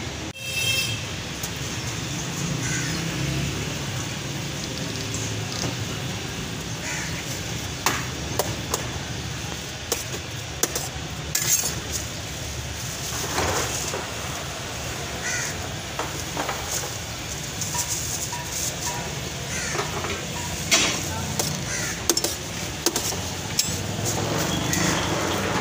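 Street-stall ambience: a steady hum of traffic and voices, with frequent short clicks and clinks of steel pots and spoons.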